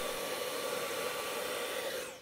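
Handheld vacuum cleaner running steadily, a rush of air with a steady motor note, sucking leftover coffee beans out of a Jura espresso machine's bean grinder.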